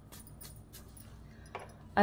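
A hand working a dry mix of maize flour and gram flour in a steel bowl: faint rubbing with a few light clinks against the steel, a slightly louder clink about one and a half seconds in.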